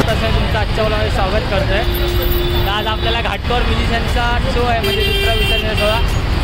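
Road traffic from cars and autorickshaws making a steady low rumble, under a man talking close to the microphone.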